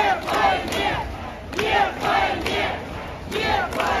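A crowd of protesters chanting "Нет войне!" ("No to war!") in Russian, the slogan shouted again and again in short, loud phrases over the hubbub of many voices.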